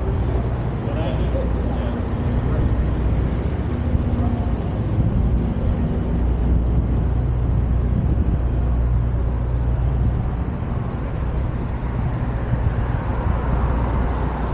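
City street traffic noise dominated by a steady low engine hum from a vehicle, with faint voices in the first couple of seconds.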